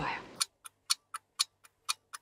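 Stopwatch ticking sound effect: about four crisp ticks a second, every other one louder, for about a second and a half.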